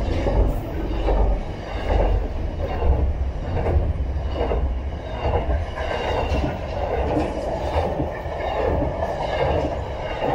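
Container freight train wagons rolling past at close range: steady rumble with the steel wheels clattering on the track in a rhythm of about one beat a second as each bogie passes. A faint high wheel squeal runs over it.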